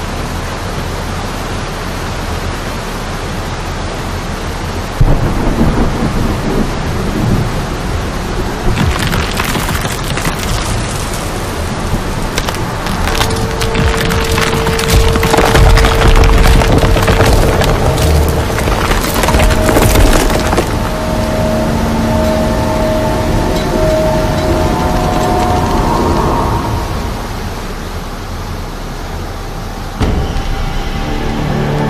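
Film sound mix of heavy rain and rushing floodwater, with a deep rumble coming in suddenly about five seconds in. A dense spell of cracking and splintering runs from about nine to twenty seconds, and long held notes of a music score come in around the middle and fade near the end.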